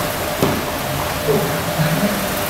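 A single thump on the foam training mats about half a second in, over a steady room noise. A low voice is heard briefly near the end.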